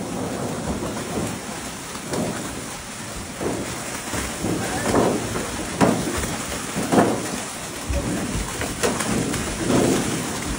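Water rushing and splashing as a load of large live fish is tipped out and slides down a metal chute into a lake, with a steady wash of water and louder splashing surges every second or two.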